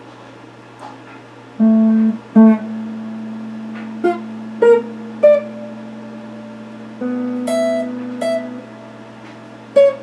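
Electric guitar played slowly, one note at a time: nine separate picked notes with pauses between them, each left ringing, starting about a second and a half in. It is a practice run through the A shape of the CAGED system.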